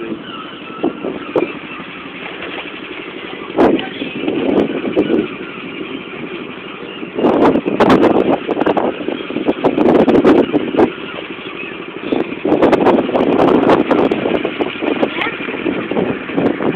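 Go-kart engines running, the noise rising and falling in uneven surges, with a few sharp knocks.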